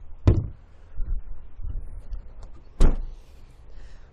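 Two thuds: the boot floor cover of a Hyundai ix35 dropping back over the spare wheel shortly after the start, then the tailgate shutting with a louder bang near the end. Faint rustling from handling comes between them.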